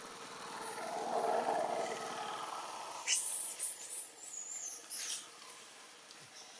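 Long-tailed macaques squealing shrilly for about two seconds, starting about three seconds in, during a chase; a rougher, lower sound swells before it, about a second in.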